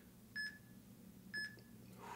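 Workout interval timer's countdown beeps: two short, high electronic beeps about a second apart, counting down the last seconds of the exercise interval.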